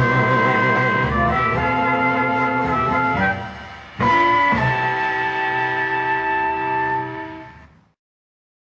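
Closing bars of a Cambodian pop song played from a vinyl record, with instruments and no singing. The music dips about three seconds in, then comes back with a final held chord that fades out near the end.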